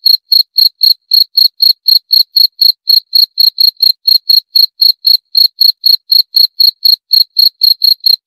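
Cricket chirping in a fast, even rhythm of about four short, high-pitched chirps a second.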